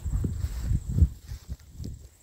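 Horse moving on mown grass: a few dull hoof thumps and rustling, the loudest thump about a second in.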